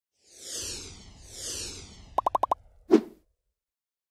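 Logo-animation sound effects: two falling whooshes, a quick run of five short pops, then one louder pop just before three seconds in.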